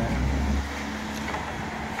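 Street traffic: a motor vehicle's low engine rumble, strongest for the first half second, then settling into a steady low hum.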